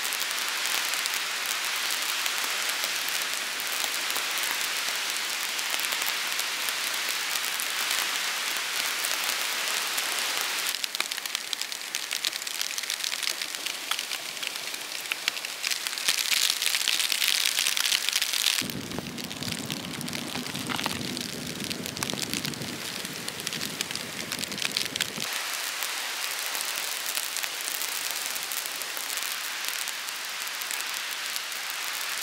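Steady rain falling in a forest, an even hiss throughout. It grows louder for a couple of seconds just past the middle, then briefly takes on a deeper, fuller tone before settling back.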